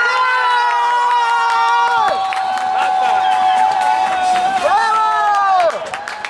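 A crowd of children cheering and shouting, several high voices holding long overlapping cries, with a short lull near the end.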